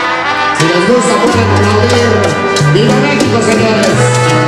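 Live tropical dance band music: a brass section playing over held bass notes, with congas and keyboard.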